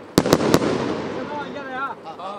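A 19-shot 1.2-inch consumer fireworks cake firing: three sharp bangs in quick succession within about half a second, followed by a fading echo.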